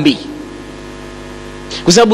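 A steady electrical hum of several even tones fills a pause in a man's voice. The voice trails off just after the start and comes back near the end.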